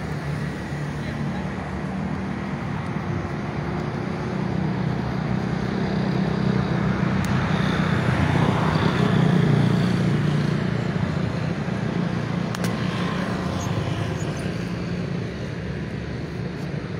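Street traffic running past, with one vehicle growing louder, loudest a little past halfway through, then fading.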